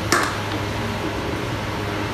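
Steady low hum and hiss of room tone on a film set, heard through a phone recording, with one brief sharp noise just after the start.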